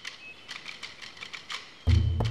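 Scattered, irregular light clicks and taps, then music comes in loudly just before the end.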